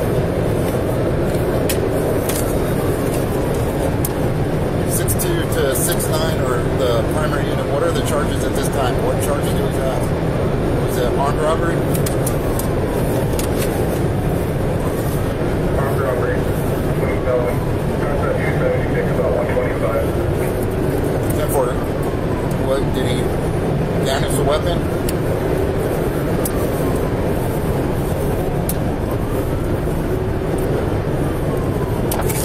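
Police patrol car siren wailing in slow rising and falling sweeps, over steady engine and road noise from the pursuing vehicle at highway speed.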